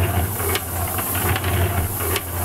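A machine running steadily: a strong low hum under a dense, fast rattle of clicks.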